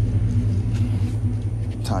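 Vehicle engine idling, a steady low hum.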